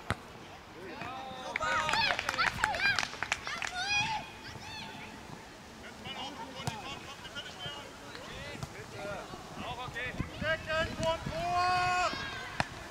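High-pitched shouts and calls of children playing football, with a long held call near the end and a few sharp ball kicks on the turf.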